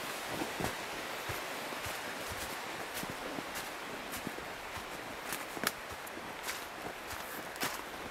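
Footsteps crunching and rustling through dry leaf litter on a forest trail, irregular steps over a steady outdoor hiss.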